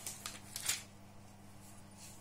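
Plastic film being peeled off an eyeshadow palette: a few crackling rustles in the first second, then quiet handling over a faint steady hum.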